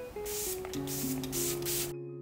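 Several quick spritzes of a pump-spray bottle of setting spray misted onto the face, short airy hisses one after another. Soft background music with held notes comes in under them about half a second in.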